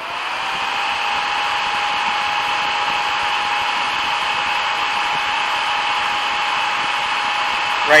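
Small electric cooling fan spinning up over about a second, then running steadily: a constant whirring rush with a steady whine above it.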